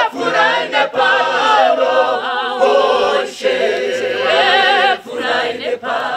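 Church choir singing a cappella, a woman's lead voice carried over the choir's harmony with the men's low bass part underneath. The singing is continuous, with brief breaths between phrases.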